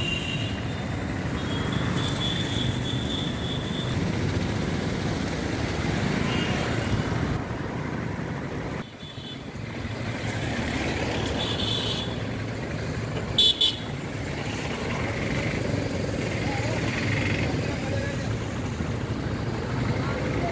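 Road traffic noise on a flooded street, with vehicle horns honking now and then. The loudest is a pair of short honks about thirteen seconds in.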